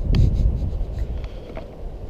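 Low rumble on the microphone, loudest in the first half-second, with a few light clicks and scuffs as the camera moves over rocky ground.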